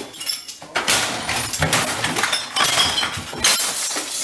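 A rapid series of crashes and bangs as things in a room are smashed, with glass clinking and breaking and short ringing after some of the hits.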